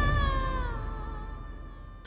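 Background score of a TV drama: a held, slightly falling synth tone over a low rumble, fading out steadily.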